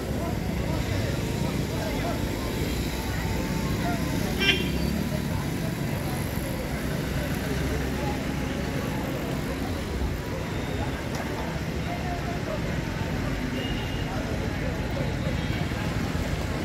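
Indistinct voices of people talking in the background over a steady low rumble, with one sharp click about four and a half seconds in.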